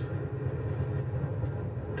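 Car engine idling, a steady low drone heard inside the cabin while the car stands still.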